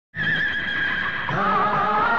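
A horse whinnying in one long, slightly wavering call. About a second in it gives way to the start of a film song's music.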